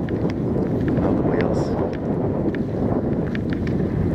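Wind buffeting the microphone, a steady low rumble with faint crackles.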